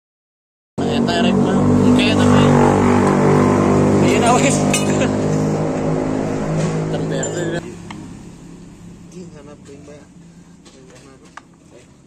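A motorcycle engine running steadily and loudly. It cuts off suddenly about eight seconds in, leaving only faint clicks of metal parts being handled.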